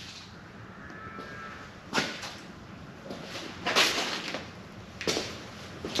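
Quiet indoor room noise broken by three short scuffs or knocks, about two, four and five seconds in.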